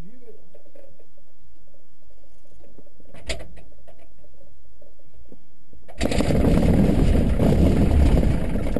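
Jodel D112's engine being hand-propped: a single knock about three seconds in, then the engine catches about six seconds in and runs loudly, heard from inside the cockpit.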